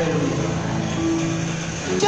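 Electronic keyboard playing held chords as instrumental music, with no singing or speech, and a higher note sounding from about a second in.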